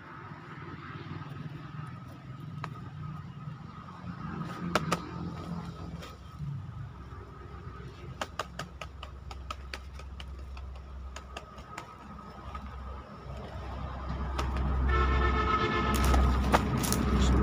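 Scattered sharp clicks and rattles of a wire-mesh snake trap being handled, over a faint steady high hum, with low rumbling handling noise growing louder near the end.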